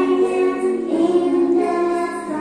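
Music: a song sung by a choir of voices over accompaniment, in long held notes, moving to a new note about halfway through.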